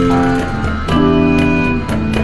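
Instrumental music: an electric guitar playing a melody of long, held notes that change about every half second, over low bass notes and percussion hits.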